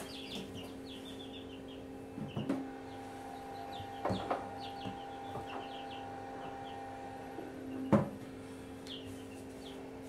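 Short high chirps from small birds, likely chicks, come in quick runs throughout over a steady low hum. A few knocks and clicks, the loudest near the end, come from eggs being handled at the incubator.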